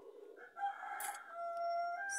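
A rooster crowing: one long crow that begins harshly and settles into a steady held note.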